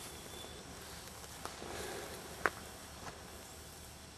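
Quiet outdoor background with three faint, sharp clicks, the clearest about two and a half seconds in, typical of handling or a small knock near the microphone.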